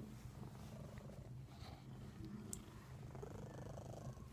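Domestic cat purring steadily, held close against the microphone.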